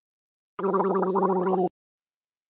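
A person gargling for about a second, a short sound effect of the kind used to illustrate mouthwash.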